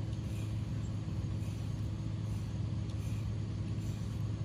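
A steady low mechanical hum that holds level throughout.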